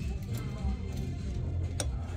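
Background music with a steady low bass line, and one short click near the end.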